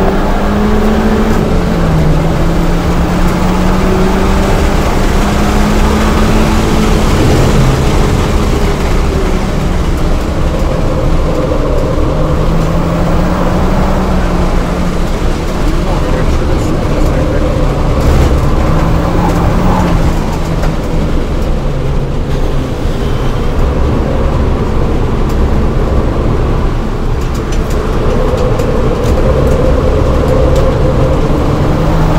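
2007 VW GTI's turbocharged 2.0-litre four-cylinder engine heard from inside the cabin while lapping a track, its pitch rising and falling as it accelerates and lifts for corners, over steady wind and road noise.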